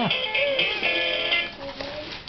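Electronic toy guitar playing a tinny recorded tune, which cuts off about one and a half seconds in.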